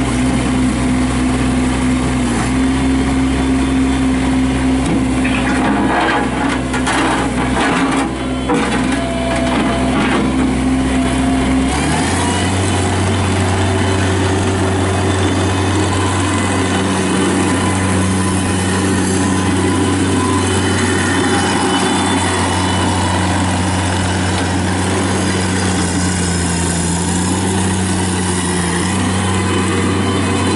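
Bobcat MT85 mini track loader's Kubota diesel engine running steadily while the machine is worked and driven on its rubber tracks. There are several knocks and clanks between about 5 and 10 seconds in. About 12 seconds in the engine note changes abruptly, then runs on steadily.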